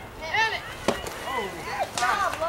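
A baseball bat hits a pitched ball once with a single sharp crack about a second in. High-pitched shouts from young players and spectators come just before it and swell into many voices cheering and yelling as the batter runs.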